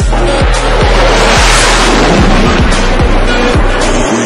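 Electronic music with a steady beat, overlaid by a jet aircraft's rushing roar that swells to its loudest in the middle and fades near the end as it passes.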